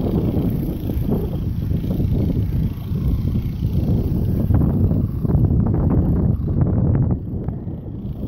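Wind buffeting the microphone: a loud, uneven rumble with no steady tone, easing slightly near the end.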